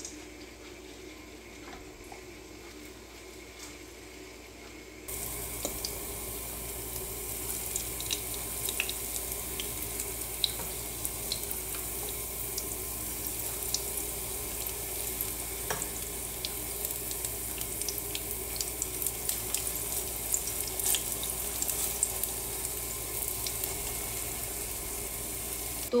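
Urad dal batter rounds shallow-frying in oil in a nonstick pan: a steady sizzle with scattered crackles. It is fainter for the first five seconds and louder from about five seconds in.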